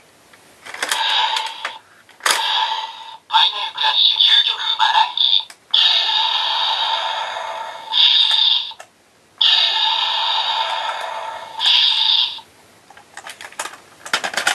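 Electronic toy sword, the DX Ultimate Geki Ryuken, playing its Final Crash finishing-move sound effects through its small built-in speaker. The sounds are a tinny run of energy and slash effects, with two long hissing whooshes that each end in a brighter burst. A few light plastic handling clicks follow near the end.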